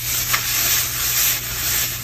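Shredded paper box filler rustling as hands drop a handful into a cardboard box and spread it around, with one sharper crackle about a third of a second in.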